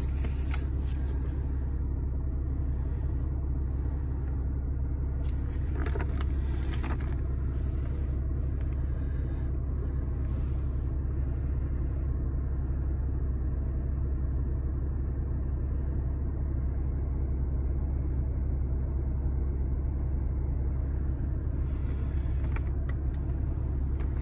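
Car engine idling, a steady low rumble heard inside the cabin, with a few brief rustles from a cardboard box being handled.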